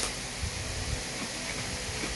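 Steady low hiss of background room noise, with no distinct sound event.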